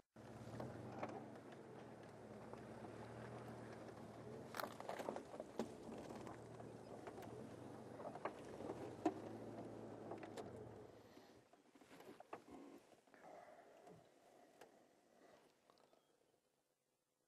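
Game-drive vehicle's engine running faintly while the vehicle reverses, with scattered crackles and clicks. The engine hum stops about eleven seconds in.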